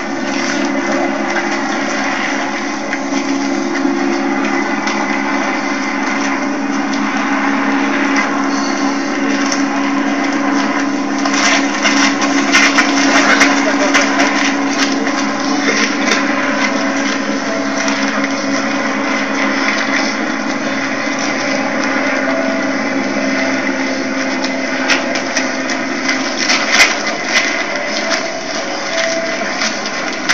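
A steady motor hum under a noisy background of voices; the hum drops away a few seconds before the end.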